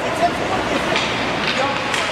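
Ice hockey game sound: spectators' voices and calls over a steady scraping hiss of skates on the ice, with a couple of sharp clacks of sticks and puck about one and one and a half seconds in.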